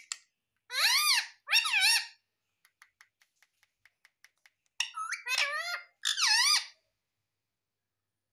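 Indian ringneck parakeet giving loud, squeaky calls that waver up and down in pitch: two short calls, a run of faint quick clicks, then a cluster of several more calls about five seconds in.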